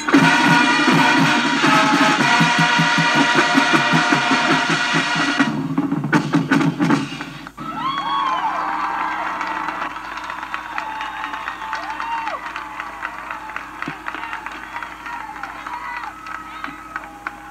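Recorded marching band music with brass and drums, played back through a boombox speaker, ends about six seconds in and gives way to the recorded audience applauding and cheering.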